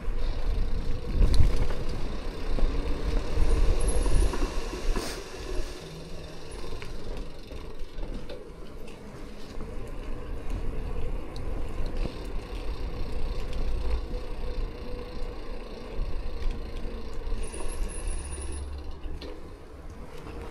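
Gravel bike being ridden: a low rumble of tyres on the road and wind on the camera, louder for the first six seconds, with scattered light clicks and rattles from the bike.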